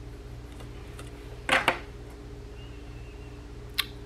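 Pencil lead scratching on paper in two quick strokes about one and a half seconds in, over a steady low hum. A single sharp click near the end.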